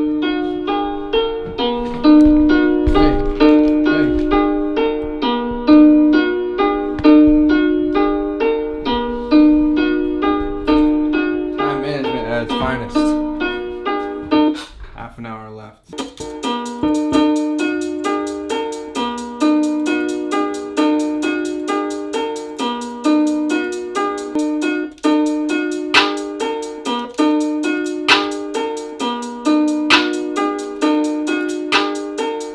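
A looped plucked melody from a beat in progress: a short figure of evenly spaced notes repeating over and over. About twelve seconds in it thins out and briefly stops, then comes back around sixteen seconds with brighter high notes layered on top.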